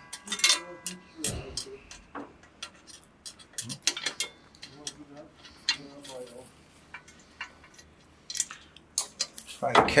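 Scattered light metallic clicks and clinks of an Allen key and a socket wrench working against a small steel bolt and Nylock nut on an e-bike's headlight and fender bracket, as the bolt is unscrewed.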